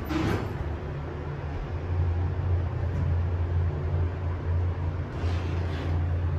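Vintage Montgomery hydraulic elevator's pump motor running as the car travels up, heard from inside the cab as a low, steady hum that grows stronger about two seconds in.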